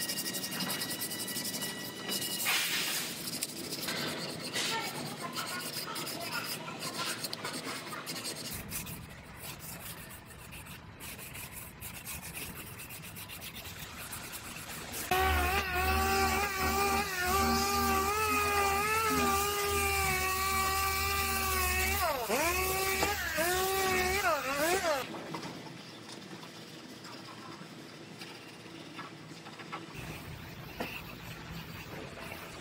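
Masking tape being handled and pressed on with rubbing and crinkling, then a roll of masking tape being unrolled along a fender for about ten seconds with a squeal that wavers and glides down and up in pitch near the end before stopping abruptly.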